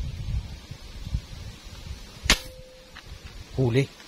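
A single shot from a custom-built fishing airgun: a sharp crack about two seconds in, with a short ringing tone after it.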